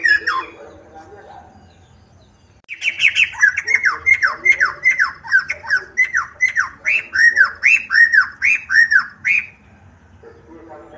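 Caged poksai hitam laughingthrush singing: after a short pause, a loud run of repeated down-slurred whistled notes, about two a second, which stops shortly before the end.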